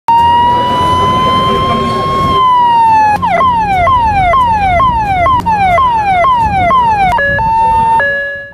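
Ambulance siren: a long slow wail that rises and then falls, switching about three seconds in to a fast yelp of repeated falling sweeps, about two a second, and ending on a steady tone, over road traffic noise.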